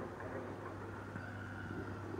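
Steady low background hum with faint rumbling noise and no voices.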